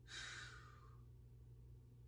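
A man's breathy sigh, fading out about a second in, then near silence with a faint low hum.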